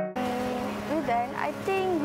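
Piano music cuts off at the very start, giving way to outdoor ambience: indistinct voices talking over a steady low hum.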